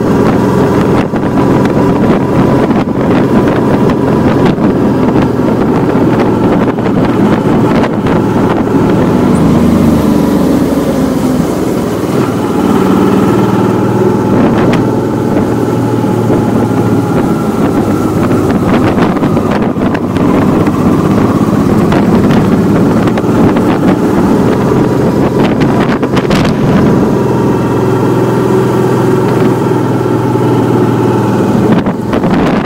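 Honda Deauville V-twin motorcycle engine running at road speed, with wind rushing over the microphone. The engine note shifts about ten seconds in and again a few seconds later.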